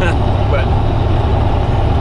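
Steady, loud low rumble of a semi-truck's diesel engine and road noise heard inside the cab at highway speed. It is very noisy, which the driver puts down to a window or door that doesn't seal quite right.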